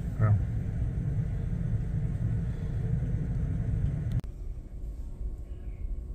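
Steady low rumble of a ship's cabin background hum, which drops off suddenly about four seconds in to a quieter hum.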